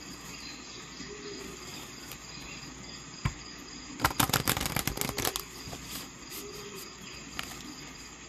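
A single sharp click about three seconds in, then a burst of rapid clicking lasting about a second and a half, over a steady background hiss with a faint high-pitched tone.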